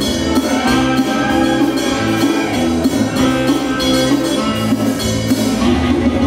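Live band jamming an upbeat instrumental: a drum kit keeps a steady beat under a repeating bass-guitar line, with electric guitar and keyboard playing over it.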